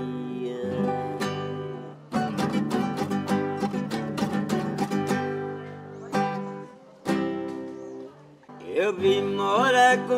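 Acoustic guitar strummed in a steady rhythm, an instrumental break in a caipira song. A man's singing voice comes back in near the end.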